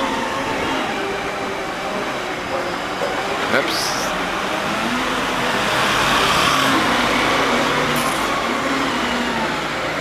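Steady, noisy outdoor street sound picked up while riding along on a Segway, with a short rising sweep about four seconds in.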